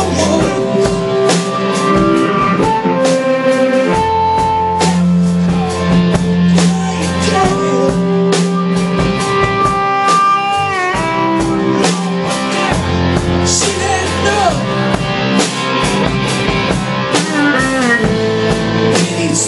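Live blues-rock band playing: an amplified harmonica plays long held notes that bend down in pitch, over electric guitar, bass and drums.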